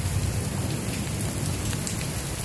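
Heavy rain falling steadily during a thunderstorm: a constant, even hiss.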